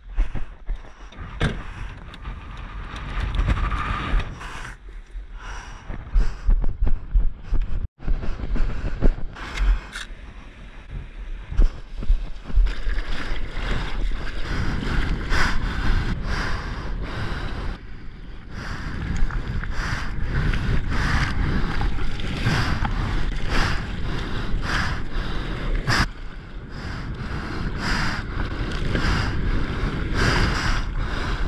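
Wind rumbling on the microphone, then, after a cut about eight seconds in, sea water sloshing and splashing close by as a surfboard moves through the waves, with many short splashes.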